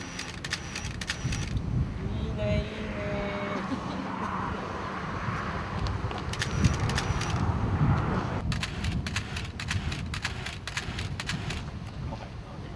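Groups of rapid camera shutter clicks in quick succession, three bursts, the last one longest, over a steady low rumble.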